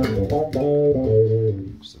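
Electric bass played through a Mu-Tron III envelope filter with its drive switch up: a short run of envelope-filtered notes that stops shortly before the end.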